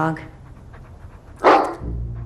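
A dog barks once, a single loud, short bark about a second and a half in.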